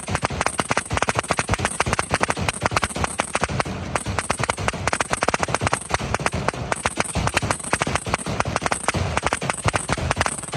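Fireworks firing in a rapid, unbroken barrage: many sharp bangs and cracks each second, with no pause.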